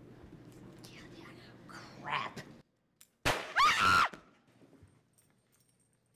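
A sudden sharp bang, a handgun fired into the ceiling as a warning shot, followed at once by a loud, high scream that rises and falls and lasts under a second. Before it, faint hall murmur cuts off into silence.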